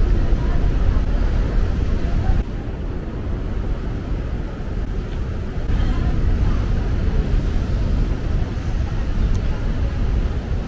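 Outdoor ambience dominated by a steady low rumble, dipping slightly about two and a half seconds in, with faint voices of passers-by.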